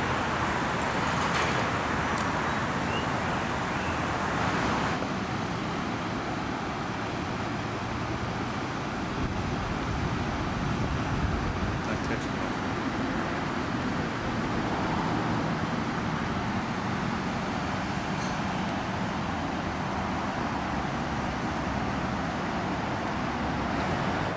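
Steady outdoor background noise, a constant rushing that shifts a little in tone about five seconds in.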